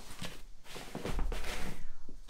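A packed fabric backpack is handled, turned over and set down on a wooden table: rustling fabric and a few soft knocks, with a dull thump a little past the middle.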